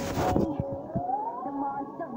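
The opening of a music video playing through a laptop speaker: thin, siren-like tones glide upward and level off. They follow a stretch of noise that cuts off about half a second in.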